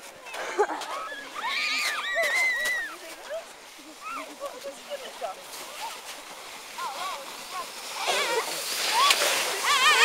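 Children shrieking and laughing while riding a linked train of sledges down a snowy slope, with the hiss of snow spraying under the sledges. A burst of high squeals comes early, the sliding hiss carries through a quieter middle stretch, and the shrieks and laughter grow loudest as the sledges arrive near the end.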